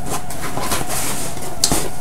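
Rustling and handling noise of a subscription box and its paper packing being opened and rummaged through, with one sharp tap about three quarters of the way through.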